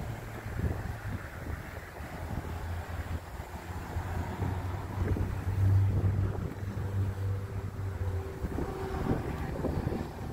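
Wind buffeting the microphone, a fluctuating rumble over a steady low hum, with a few faint higher tones near the end.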